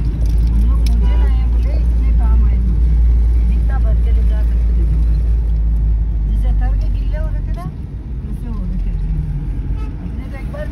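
Steady low rumble of a car driving, heard from inside the cabin, easing briefly about eight seconds in.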